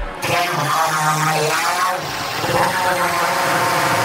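Psytrance breakdown: the kick drum and bassline drop out, leaving dense, swirling synth effects with a low held tone about half a second to a second and a half in.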